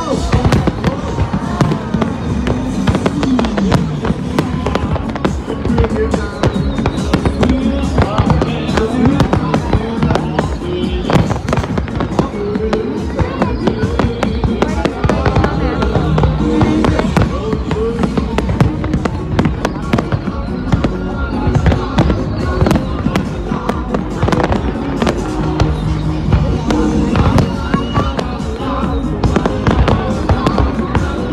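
Aerial firework shells bursting in a rapid, unbroken run of bangs and crackles, with music playing along.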